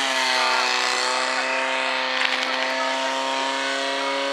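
Fire-sport portable fire pump's petrol engine running at steady high revs, pumping water into the attack hoses. Its note drifts slightly upward.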